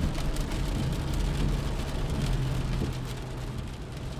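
Sound effect of a car driving: a steady low engine hum under a dense, crackling hiss of road and rain noise.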